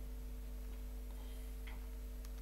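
A few faint clicks of a laptop keyboard, about a second in and again near the end, over a steady low hum.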